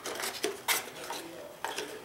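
A cardboard accessory tray is handled in a tablet box, with a series of sharp clicks and light knocks as the plastic wall-charger pieces in it shift. The loudest click comes about two-thirds of a second in.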